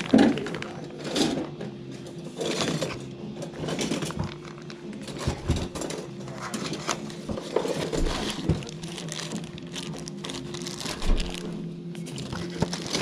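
Cardboard box and plastic packaging being handled: irregular rustling, scraping and light knocks as items are moved about and lifted out, over a steady low hum.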